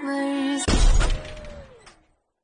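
Music cuts off about half a second in for a loud glass-shattering effect that crashes and then dies away, with a falling tone as it fades.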